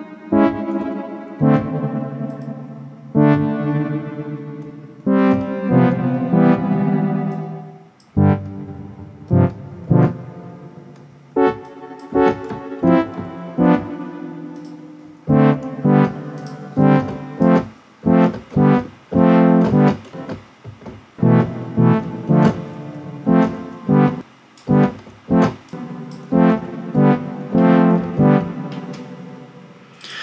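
Synthesizer notes from Reason's Europa synth played through the Dedalus granular delay plugin, each note trailing off in echoes. The notes are held longer at first and become short and quick, several a second, from about halfway in.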